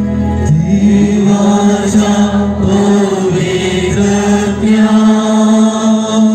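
Devotional prayer chant sung with music, a voice holding long, steady notes.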